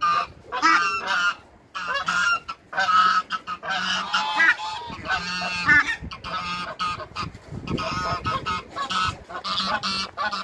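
Domestic waterfowl calling: a near-continuous run of loud, repeated honking calls with short breaks between them.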